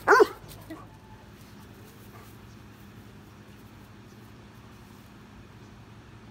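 A young male Doberman gives one loud, short bark right at the start, an alert bark at a bird. A faint second sound follows just under a second in, then only low steady outdoor background.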